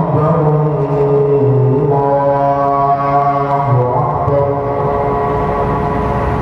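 A man's voice chanting a slow, melismatic religious chant, holding each note for a second or more before sliding to the next pitch.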